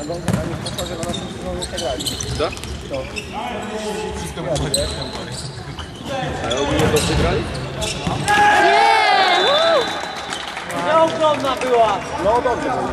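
A futsal ball being kicked and bouncing on a sports-hall floor in a string of sharp knocks, echoing in the hall, with players' shouts loudest about two-thirds of the way in and again near the end.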